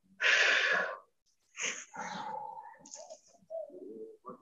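A woman's loud breath out, lasting under a second, as she folds forward in a yoga stretch, followed by quieter breathing sounds.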